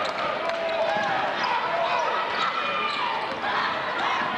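A basketball dribbled on a hardwood gym floor, with short high sneaker squeaks and background voices from players and crowd echoing in the gym.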